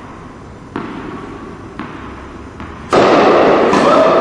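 Three soft thuds about a second apart, a tennis ball bounced on an indoor court before a serve. Near the end a sudden loud rush of noise breaks in and holds on, with a steady tone rising out of it.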